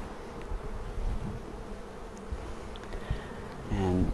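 A colony of European honeybees buzzing on the open frames of a hive, a steady hum.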